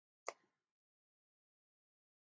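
Near silence, broken once by a single brief click or tap about a quarter of a second in.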